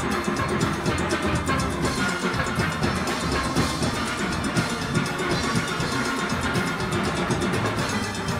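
A full steel orchestra playing live: many steelpans together over drum kit and percussion, with a dense, steady beat.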